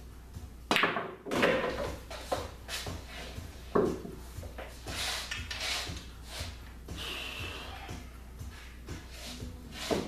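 A pool cue strikes the cue ball with a sharp click about a second in, and the ball rolls across the cloth; a louder knock follows near four seconds in as the cue ball drops into a pocket. The object ball is left untouched, so the shot is a scratch.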